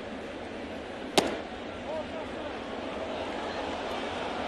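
A pitched baseball, a slider taken for a ball with no swing, smacks into the catcher's mitt once about a second in, a single sharp pop over the steady murmur of a stadium crowd.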